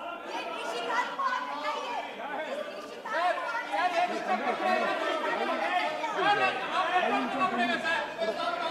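Many voices talking over one another at once in a large hall, with no single speaker standing out.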